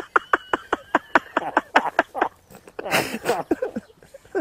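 A man laughing heartily in quick repeated bursts, with a louder, breathier burst about three seconds in.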